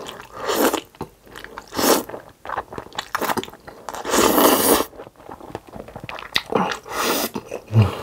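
Close-miked slurping and chewing of jjajangmyeon (black bean noodles): several wet bursts of noodles being sucked in, the longest about four seconds in, with chewing between them.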